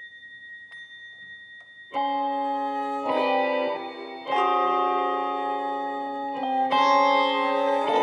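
Live contemporary ensemble of electronic wind instruments (EWIs), electric guitar, keyboard and percussion. It plays softly with a few faint clicks, then loud sustained chords come in about two seconds in and shift to new chords several times.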